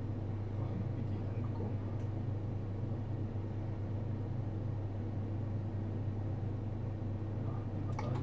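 Ultrasound scanner humming steadily, a constant low drone with no rhythm in it.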